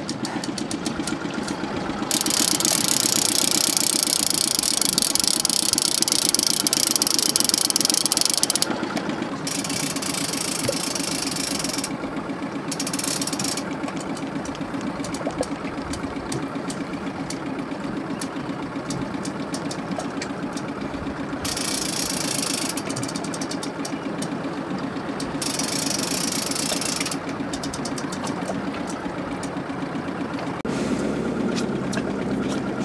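Outboard motors running steadily at low speed, a continuous low hum. A high hiss comes and goes several times over it.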